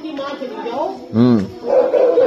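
People's voices speaking, broken a little over a second in by one short, loud vocal sound whose pitch rises and falls.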